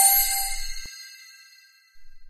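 Sparkly magic chime sound effect: a bright shimmer of high, bell-like tones that fades away over about two seconds.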